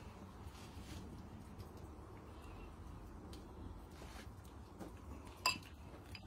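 Faint steady background with one sharp clink about five and a half seconds in, like a spoon knocking a ceramic bowl.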